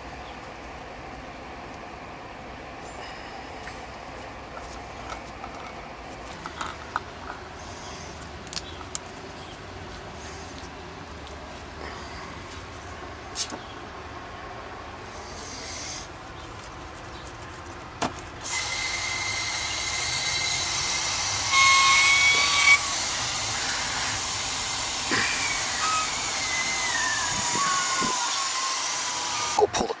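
Small clicks of hoses and fittings being handled. Then, about two-thirds of the way in, a sudden loud steady hiss of nitrogen rushing from a regulated cylinder through the hoses and manifold valve, with thin whistling tones that slide downward near the end. The gas is pressurizing an empty refrigerant system for a leak search.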